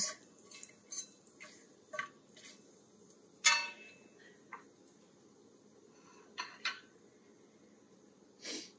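Metal spatula knocking and scraping against a stainless steel saucepan while stirring whole spices in hot oil: a string of short light clinks, the loudest about three and a half seconds in, and a couple more near the end.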